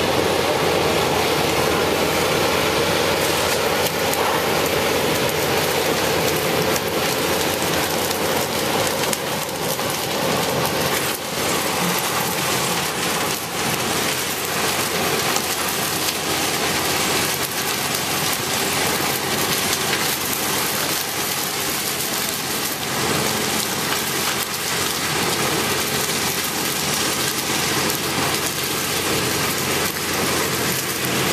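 Case sugarcane harvester working in the field: its engine and elevator run steadily while chopped cane billets are discharged into a trailer beside it, a loud, dense, continuous noise.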